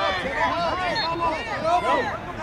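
Several voices calling out and talking over one another, unintelligible: spectator and sideline shouting during a youth lacrosse game.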